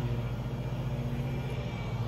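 A lawn mower engine cutting grass, heard as a steady low hum that does not change.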